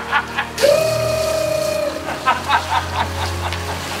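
A man singing a party song in a shrill, high voice: one long held note lasting over a second, then quick short sung syllables, over a steady low musical backing.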